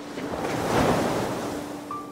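A rushing, wind-like whoosh of noise that swells to a peak about a second in and then fades, with faint held music notes underneath.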